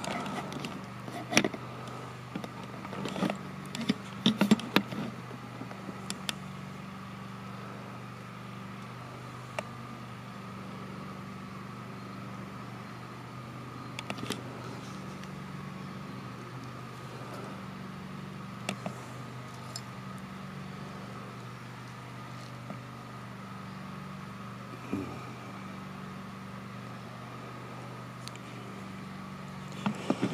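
A steady low drone runs throughout, with a few short clicks and rustles in the first five seconds and a brief faint sound near the end.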